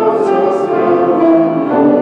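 A slow hymn: voices singing long sustained notes over piano accompaniment, the chords changing every second or two.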